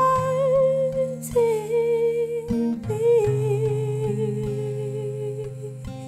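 A woman sings long wordless held notes with vibrato, three of them, the last held for nearly three seconds, over strummed acoustic guitar chords. It is the song's closing outro.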